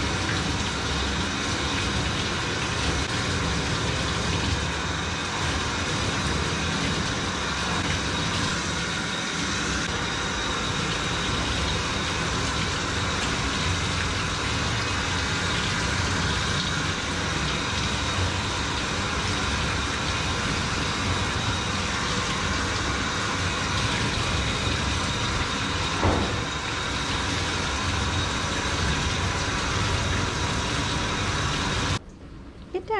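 Water spraying steadily from a handheld grooming-tub sprayer, rinsing shampoo off a small dog's coat. A short sharp click about 26 seconds in.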